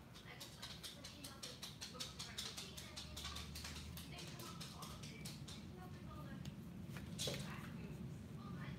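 Rapid light clicking and tapping, several clicks a second for about five seconds, then one louder click near the end, from small hard objects being handled at a table during painting.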